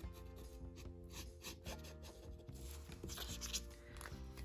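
Faint background music with soft held notes, under the tip of a Posca paint pen rubbing on a painted stone in short strokes.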